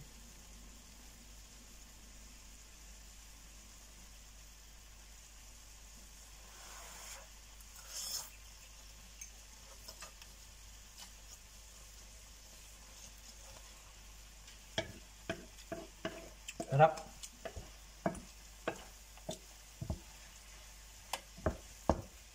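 Prawns and udon noodles frying in a nonstick pan with a faint, steady sizzle. From about two-thirds of the way through, wooden chopsticks and a spatula stir the noodles, tapping against the pan in a quick string of knocks.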